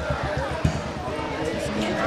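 Voices of a walking procession crowd over a quick, even run of low thuds, about eight a second.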